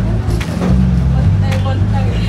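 Low, steady rumble of a city bus on the move, heard from inside the cabin, with a few sharp clicks or rattles.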